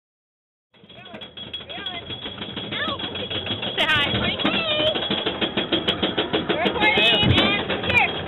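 Colossus wooden roller coaster train climbing the lift hill: rapid, even clacking of the chain lift and anti-rollback ratchet, starting about a second in, with riders' voices over it.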